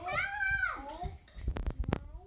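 A child's voice in one drawn-out call that rises and then falls in pitch, followed near the end by a quick series of sharp knocks.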